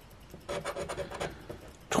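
A coin scratching the coating off a lottery scratch-off ticket in quick, short back-and-forth strokes, starting about half a second in.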